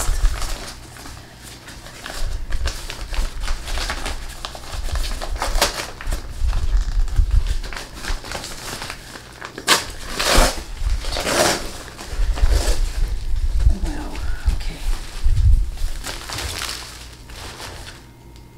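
Crumpled brown kraft packing paper crinkling and rustling as it is pulled and peeled off a wrapped potted plant, in irregular spells, loudest a little past the middle.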